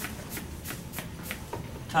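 Dry-erase marker writing on a whiteboard: a run of short, quick strokes, about six in two seconds.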